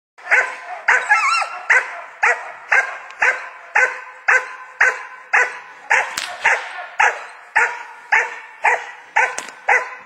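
Young German Shepherd puppy barking continuously in a steady rhythm, about two sharp barks a second, at a helper during protection (defence) training.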